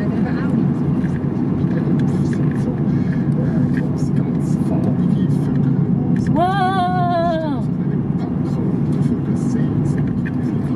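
Steady road and engine noise of a moving car, heard from inside the cabin. About six seconds in, a voice holds one wavering note for just over a second.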